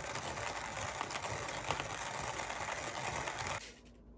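Hand-cranked coffee grinder with a metal burr hopper on a wooden base grinding coffee beans, a steady rattling grind as the handle turns; it stops shortly before the end.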